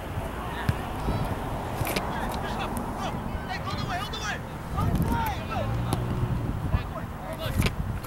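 Scattered shouts and calls from players and sideline spectators at a youth soccer game as play goes in near the goal, with wind rumbling on the microphone underneath.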